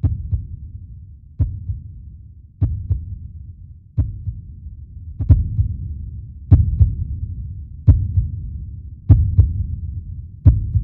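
Closing sound: a low drone with a sharp double beat about every 1.3 seconds, like a heartbeat.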